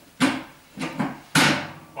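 Three short knocks with rustling from the treatment table and its sheet as the patient is shifted into place on it.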